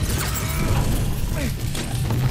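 Film soundtrack of a close-quarters brawl: scuffling and blows with grunts over a low music score, with sharp hits about a second and a half in and again just before the end.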